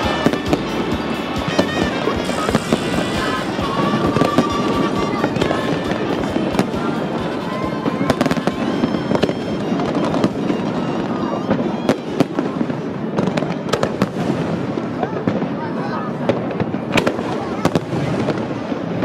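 Fireworks display: aerial shells bursting in a dense run of sharp bangs and crackles.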